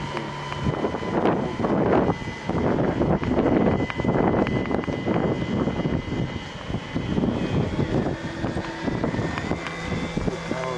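Autogyro flying overhead: its engine and propeller drone steadily, with the loudness rising and falling as it passes.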